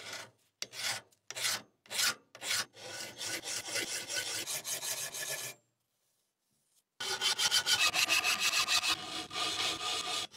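Flat hand file scraping along a rusted steel knife blade, filing off the rust: a few slow, separate strokes, then quick back-and-forth filing. It stops for about a second and a half, then starts again fast, about five strokes a second.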